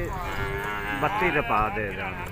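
A water buffalo calf bellowing: one drawn-out call lasting about a second.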